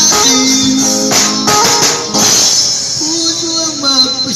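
Live street band: a drum kit with steadily ringing cymbals, played along with a guitar. A voice joins in near the end.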